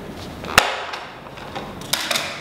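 Plastic back cover of a tablet shell unclipping with one sharp click about half a second in, a brief scrape as it comes away, and a light knock near the end as it is set down on a wooden table.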